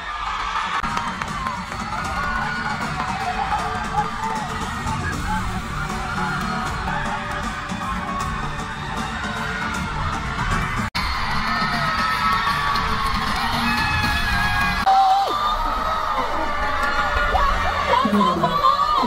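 Live concert sound recorded from among the audience: music with a heavy low beat from the stage, under a crowd of fans screaming and cheering. The sound drops out for an instant about eleven seconds in, at a cut.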